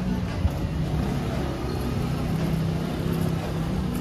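A moped's engine running with a steady low hum, heard over general street noise.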